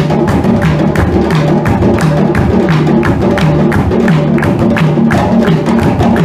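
A group of hand drums, tall wooden barrel drums among them, played live together: a fast, steady rhythm of sharp strokes over a repeating pattern of low, pitched drum tones.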